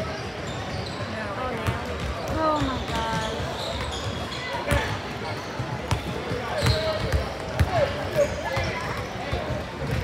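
Basketball gym chatter: scattered voices of players and spectators, with several sharp thumps of basketballs bouncing on the hardwood court in the second half.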